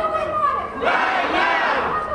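Large crowd shouting and cheering together, many voices overlapping, swelling louder about a second in.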